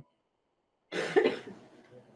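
A person's single short, breathy vocal burst about a second in, laugh- or cough-like, after near silence.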